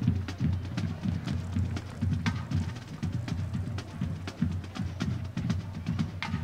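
Marching band music carried by its drums: a steady beat of drum hits with sharp percussion strokes over it.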